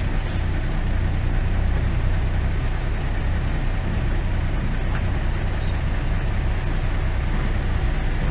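Semi truck's diesel engine idling, a steady low hum heard from inside the cab.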